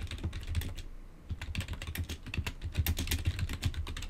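Typing on a computer keyboard: a quick, continuous run of key clicks with a brief pause about a second in.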